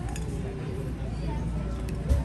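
A metal fork clinking against a ceramic plate while cutting into a cannoli, one light tap just after the start and another near the end, over background restaurant chatter.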